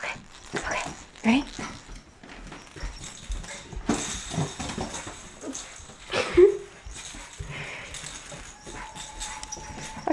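Dog whimpering in a few short calls, the loudest about six seconds in, over scattered rustling and handling noise.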